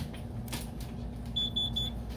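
Three quick, high-pitched electronic beeps about a second and a half in, over a steady low hum.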